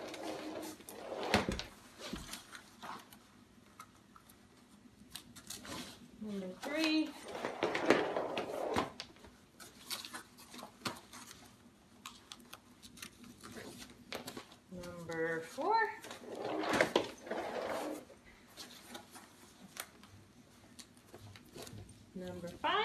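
Velcro tabs on a travel-crib mattress being pulled through the crib's bottom fabric and pressed shut: short rasping tears of a second or two, several times, among fabric rustling and light handling clicks.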